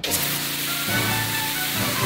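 Pressure washer's high-pressure water jet hitting a concrete walkway: a steady hiss that starts suddenly right at the beginning, with background music underneath.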